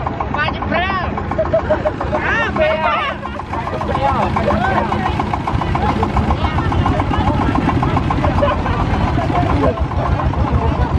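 Single-cylinder diesel engine of a two-wheel walking tractor chugging steadily under way, pulling a loaded trailer. People's voices talk over it during the first three seconds.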